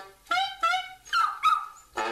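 Small dog howling along to saxophone and trombone music, giving about four short, high, wavering cries, one of them sliding in pitch.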